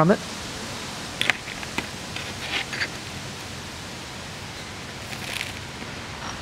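Steady background hiss with a few faint, light clicks and taps as pieces of gem silica chrysocolla rough are handled and knock against one another. The clicks come around a second in, near the middle and again near the end.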